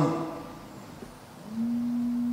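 A man's drawn-out hesitation sound held on one steady low note, starting about halfway through after a short hush, running straight into his next words.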